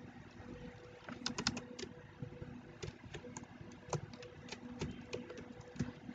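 Faint, irregular keystrokes on a computer keyboard, starting about a second in, with a faint steady hum underneath.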